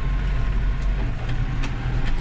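Tractor engine running steadily under way, heard from inside the cab, a low, even hum with a few light rattles of the cab.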